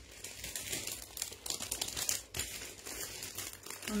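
Crinkling and rustling of a white handbag being handled and turned over, with many small, irregular clicks.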